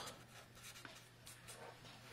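Faint scratching of a marker pen writing words on paper, in short strokes, over a low steady hum.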